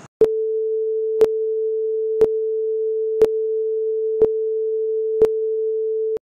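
Film-leader countdown sound effect: a steady mid-pitched tone with a sharp click about once a second, six clicks in all, stopping abruptly at the end.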